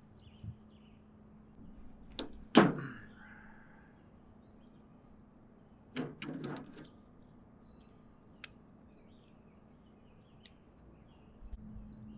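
Sharp clicks and knocks from hands working an electrical cord's cut end and plug: two clicks about two seconds in, the second the loudest, a quick cluster of clicks about six seconds in, and a single tick later, over a faint steady hum.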